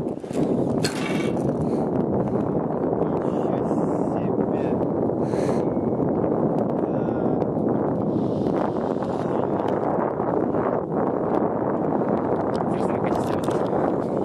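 Wind buffeting the camera's microphone high on an open tower, a steady rushing with a few faint knocks.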